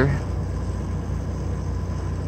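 Steady low mechanical drone with a fast, even pulse.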